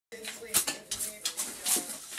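A border collie tearing at and scattering dry scraps on a carpet: a run of irregular crackling rips and rustles.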